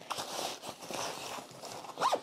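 Rustling and scuffing of fabric as a small toolkit pouch is pushed into the pocket of a padded cricket kit bag, with small irregular clicks and rubs of handling.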